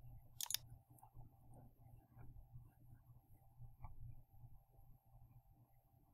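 Near silence: faint room tone with a low hum, and one short sharp click about half a second in, likely a computer mouse button.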